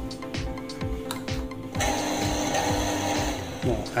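Shimizu water-pump electric motor switched on about two seconds in, then running steadily with a cutting disc on an M10 mandrel turning on its shaft. It runs smoothly without wobble, a sign the mandrel is tight. Background music with a regular beat plays throughout.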